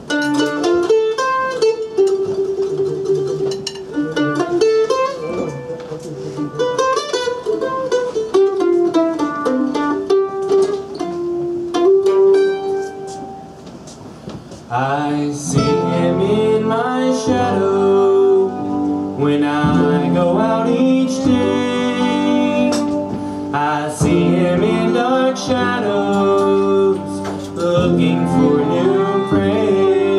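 Live acoustic bluegrass band: picked strings play a sparse opening alone. About halfway in, the fiddle, upright bass and the rest of the band come in together and the music gets fuller and louder.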